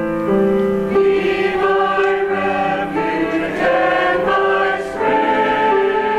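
Mixed church choir of men's and women's voices singing an anthem in held notes that move to new pitches every second or so.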